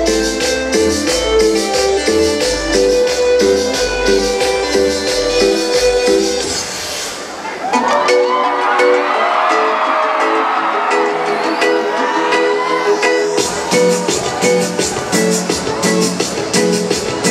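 Live electronic cumbia played loud through a concert sound system: a repeating keyboard riff over bass and percussion. About six seconds in, the bass and beat drop out for a bare stretch with gliding voices over it. The full beat comes back about thirteen seconds in.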